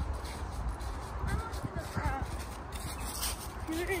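Footsteps shuffling through fallen leaves over a low, steady rumble on the microphone, with faint voices and a laugh near the end.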